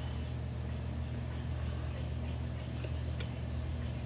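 Room tone with a steady low hum, and a couple of faint small clicks about three seconds in.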